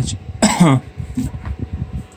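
A man clearing his throat once, about half a second in, over a low, uneven rumble.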